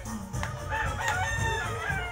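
A rooster crowing once: one long call that starts about half a second in, over background music.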